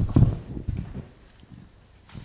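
Handling noise from a handheld microphone: a cluster of low thumps and knocks in the first second, fading to faint bumps.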